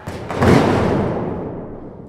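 A cinematic boom sound effect: a sudden deep hit that peaks about half a second in and then fades away slowly.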